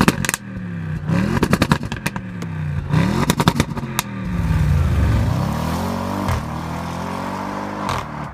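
The previous-generation (C7) Audi RS6 Avant's twin-turbo 4.0 V8 is revved several short times, and each rev falls away with a quick burst of exhaust crackles and pops. A longer rev about four to five seconds in drops back into a lower, steadier engine note.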